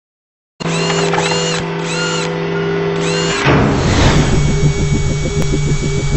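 Produced intro sound effects for a logo animation. After a brief silence a steady tone sounds with short arching squeals about twice a second. From about three and a half seconds it changes to a fast pulsing mechanical buzz.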